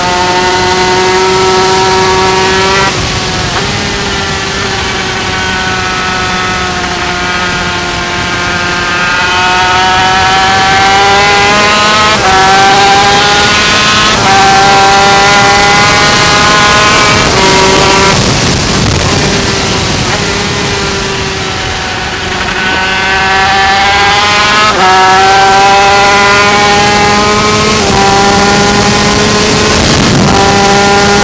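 Yamaha TZ250 two-stroke twin race engine under hard acceleration, its pitch climbing through each gear and dropping sharply at several upshifts. Around the middle the revs fall away and then build again out of a corner, all over a steady rush of wind past the onboard camera.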